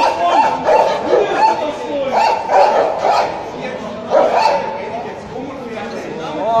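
Police dogs barking in quick, repeated runs, loud and sharp, easing off about four and a half seconds in.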